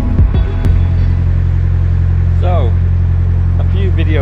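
A narrowboat's diesel engine running steadily under way, a low even hum. Background music cuts off within the first second, and the engine carries on alone.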